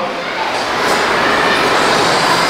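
Chalk scraping on a blackboard as a circle is drawn around a word: a steady, scratchy noise.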